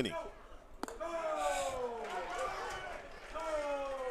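A pitched baseball smacking into the catcher's mitt a little under a second in. A man's voice follows with one long drawn-out call that slowly falls in pitch.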